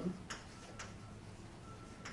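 Chalk writing on a blackboard: a few irregular sharp taps of the chalk against the board, with light scraping and a faint thin squeak now and then.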